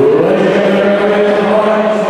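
A man's voice through a microphone holding one long drawn-out call, in the style of a ring announcer stretching out a fighter's name. It rises in pitch at the start, then holds steady over background crowd noise.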